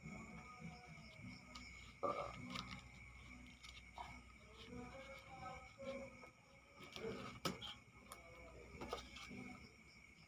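Coins clinking and being set down on a wooden floor while small change is counted by hand: a few separate sharp clicks, the clearest about two seconds in and about seven and a half seconds in. Crickets chirr steadily behind them.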